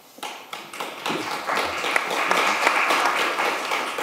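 Audience applauding: a few scattered claps that build into steady applause about a second in.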